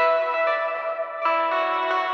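Intro of a melodic metalcore song: picked guitar notes with effects, ringing into one another, with a change of chord about a second and a quarter in. No drums yet.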